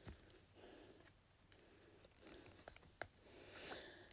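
Near silence with a few faint clicks and soft scratching: small steel pliers gripping a needle and drawing thick crochet thread through the tightly wrapped centre of a wooden-bead button.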